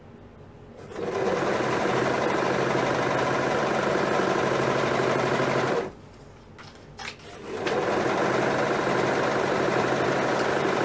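Overlock machine (serger) stitching a seam at speed, running for about five seconds, stopping briefly with a single click, then starting up again and running on.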